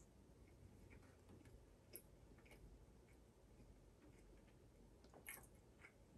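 Near silence with faint chewing: a man chewing a mouthful of burger topped with crunchy dried noodles, with a few soft mouth clicks, one about two seconds in and another near the end.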